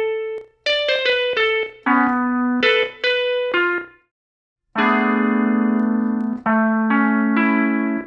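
A single guitar note sliced from a loop and played back through a software sampler at different pitches. First comes a run of short notes, then a brief silence about four seconds in, then longer held notes, some overlapping.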